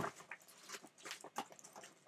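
Faint rustling and a few light knocks of paper comics being handled and lifted out of a cardboard box.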